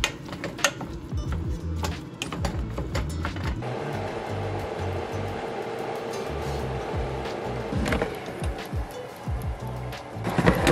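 Background music with a steady beat. Over it, a plastic meat chopper clicks and scrapes in a saucepan of ground turkey during the first few seconds, and a steady hiss follows for most of the rest.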